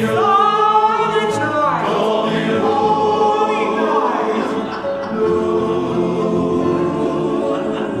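Men's chorus singing in harmony, with the voices sliding in pitch a few times in the first half.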